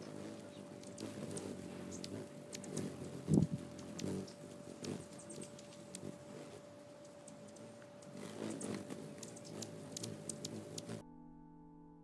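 Hummingbirds crowding a feeder: wing hum swelling as birds fly close, with many short sharp chips, over a steady thin electrical hum. There is one low thump about three seconds in. About a second before the end the field sound cuts off and string music begins.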